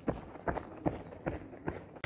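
A runner's footfalls: steady running footsteps, about five sharp strikes in two seconds.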